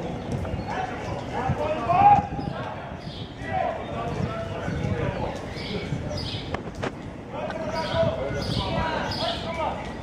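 Football players calling and shouting to one another across an open pitch during a practice game, with the sharp knock of a ball being kicked about two-thirds of the way through.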